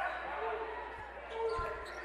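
A basketball dribbled on a hardwood gym floor, a couple of dull bounces over the steady murmur of a crowd in a large gym.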